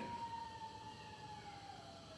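A faint siren-like tone, with a fainter overtone above it, falling slowly and steadily in pitch.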